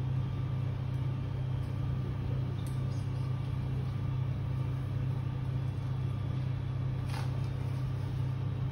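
Steady low machine hum, unchanging throughout, with a couple of faint soft ticks.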